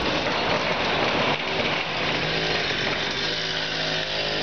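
Ground firework fountain spraying sparks with a steady hiss and crackle.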